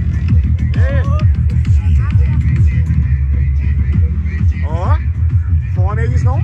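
Loud electronic dance music with heavy bass and a steady beat, played through a large car sound system, with voices mixed in over it.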